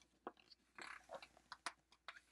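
A picture-book page being turned and laid flat: faint paper rustling with a string of crisp snaps, the sharpest one near the end.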